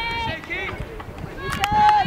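Girls' voices calling and shouting across the field in high, drawn-out calls, with a couple of sharp clicks about one and a half seconds in.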